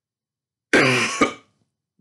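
A man clearing his throat into his elbow with two harsh coughs about half a second apart, beginning a little after the start.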